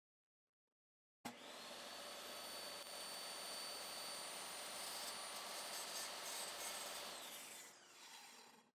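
Dewalt DW7491 table saw's motor switched on: it comes up to speed almost at once about a second in and runs steadily with a high whine. Near the end it is switched off, and the whine falls as the blade coasts down.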